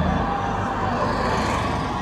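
Golf cart driving past close by, a low steady running sound that eases slightly as it goes by.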